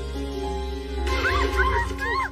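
Soft film background music of held, sustained tones; about a second in, high squeaky cries with sliding pitch join over it.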